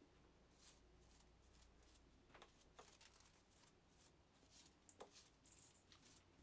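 Very faint brushing: a small brush sweeping steel chips off a milled workpiece and machine vise, a stroke or two each second, with a few light ticks.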